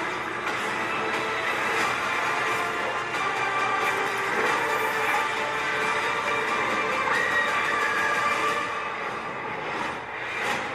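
Movie trailer soundtrack: dense, dramatic music of sustained tones, held at a steady loud level and easing slightly near the end.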